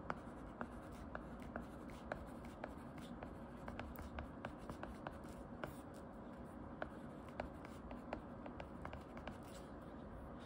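Plastic tip of an Apple-Pencil-style stylus tapping and sliding on an iPad's glass screen during handwritten note-taking: a run of light, irregular clicks over a faint steady hiss.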